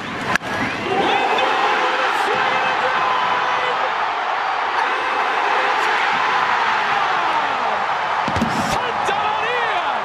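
A sharp crack of the bat on the ball just after the start, then a ballpark crowd roaring steadily, with a broadcaster's voice over the roar.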